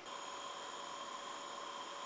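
Faint steady electrical whine at several fixed pitches over a low hiss, which sets in abruptly at the start and holds unchanged.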